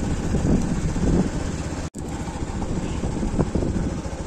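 Wind rumbling on a phone microphone, mixed with road noise. The sound cuts out for an instant about halfway through, then carries on.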